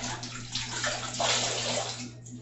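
Water running and splashing in a bathroom sink as hands work in it under the tap, louder in the second second and stopping near the end.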